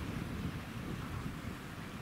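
Wind buffeting the microphone: an uneven low rumble over a steady hiss.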